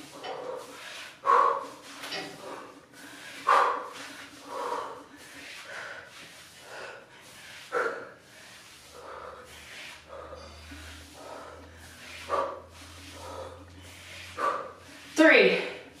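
A woman breathing hard from exertion during a plank-to-pike exercise: short, forceful, voiced exhales about every one to two seconds, the strongest near the end. A faint low hum sits underneath in the middle stretch.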